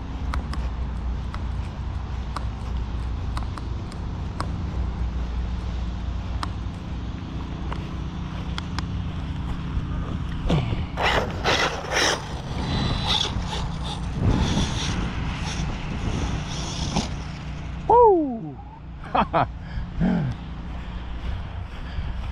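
Steady wind rumble on the microphone, then about halfway through an Arrma Typhon 6S BLX RC buggy runs close by on grass for several seconds, its brushless motor and tyres loud and gritty.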